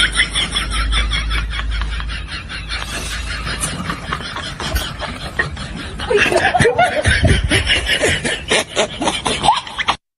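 People snickering and chuckling in rapid, continuous bursts. The laughter becomes louder and higher-pitched from about six seconds in.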